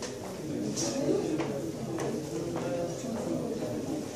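Indistinct chatter of people talking, too unclear to make out the words.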